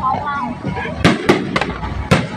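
Fireworks bursting in the sky: three sharp bangs in quick succession about halfway through.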